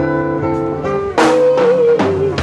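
Live band music: acoustic guitar playing with drums and sustained notes, and a loud entry about a second in that carries a long, wavering held note.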